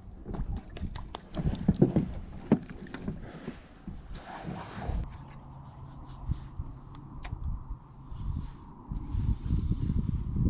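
Scattered clicks and light knocks of fishing tackle being handled in a small boat as a soft-plastic worm is rigged and the spinning rod cast. About halfway through there is a brief swish, and a faint steady hum follows until near the end.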